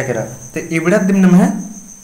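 A man speaking, explaining a grammar lesson, with a faint steady high-pitched tone running underneath.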